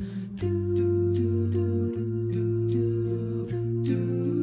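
A seven-voice a cappella vocal jazz ensemble sings a wordless intro, holding close-harmony chords on 'doo' syllables over a sung bass line, with the voices moving together in a light, regular pulse.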